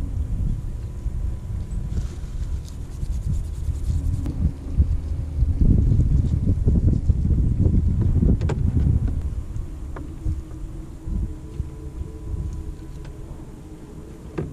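Wind buffeting the microphone, a low rumble that rises and falls in gusts, with a few faint light clicks.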